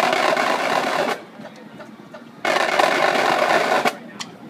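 Marching drumline playing two loud unison drum rolls, each about a second and a half long and cut off together, with a pause of about the same length between them.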